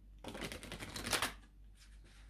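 Tarot deck being shuffled by hand: a quick run of rapid card flicks lasting about a second, then one faint click near the end.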